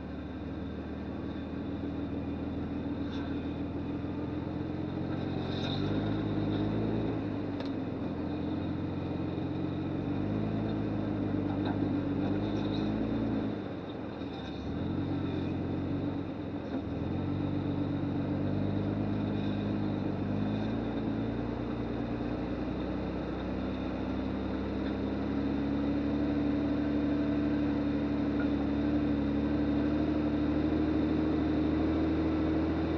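1997 Lexus LX450's 4.5-litre straight-six engine running at low revs as the truck crawls along at walking pace, its note rising and falling with the throttle and dipping briefly about halfway. A few light clicks come in the first eight seconds.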